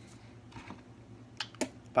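A dipper spitting tobacco juice into a plastic spit cup: two short sharp clicks about a second and a half in, against a low room hush.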